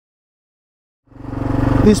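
Silence, then about halfway through the sound comes in abruptly: a Kawasaki KLR 650's single-cylinder engine running steadily with an even low pulse. A man's voice starts just before the end.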